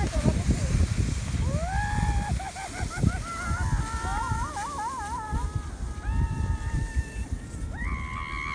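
A woman laughing and squealing in long, high, wavering cries as she slides down an icy sledding hill, the pitch trembling in the middle and held steadier near the end. A low rumbling noise runs underneath.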